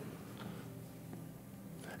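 Faint room tone in a hall, with a low steady hum.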